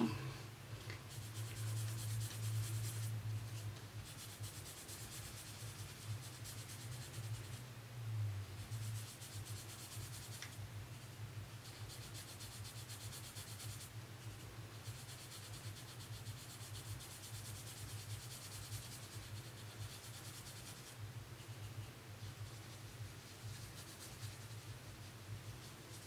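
Sponge-tipped applicator rubbing pan pastel onto drawing paper: a soft, scratchy brushing in stretches of a few seconds with short pauses between them, as the background colour is worked in.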